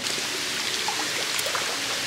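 Heavy rain falling on a pond and wet concrete, a steady hiss.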